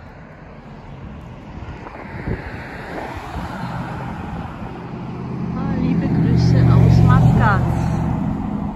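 Road traffic: cars driving past on a multi-lane road. A vehicle's engine and tyre noise build up and are loudest about six to seven seconds in as it passes close by.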